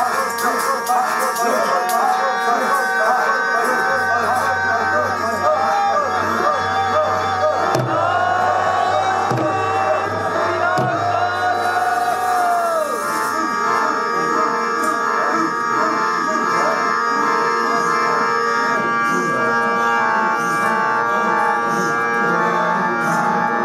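Kirtan: harmoniums holding steady chords, with a voice singing long gliding phrases over them until about halfway through. Tabla strokes fall now and then, the bass drum's low note bending in pitch, a few of them between about eight and eleven seconds in.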